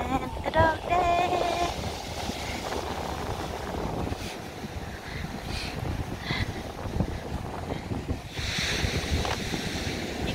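Strong wind buffeting the microphone over the wash of surf breaking on the beach, with a louder hissy surge about eight and a half seconds in. A voice is heard briefly in the first two seconds.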